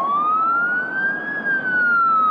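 An emergency vehicle siren wailing: its pitch rises for about a second and a half, then begins a long, slow fall. A rushing background noise runs underneath.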